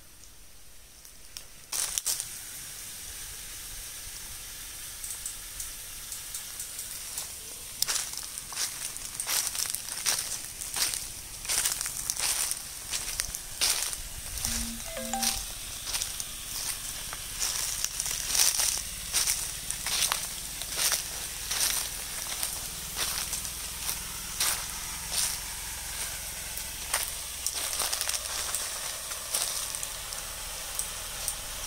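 Footsteps crunching through a thick layer of dry fallen mango leaves, a sharp crunch about every half second to second from about eight seconds in.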